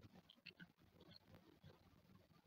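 Near silence: quiet outdoor background with a few faint short ticks.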